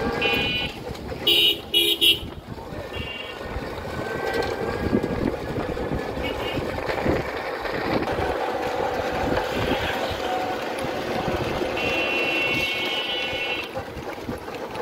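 Busy street traffic with vehicle horns honking: two loud short honks about one and a half and two seconds in, a few shorter ones early and around three seconds, and one held for nearly two seconds near the end, over the steady rumble of engines and road noise.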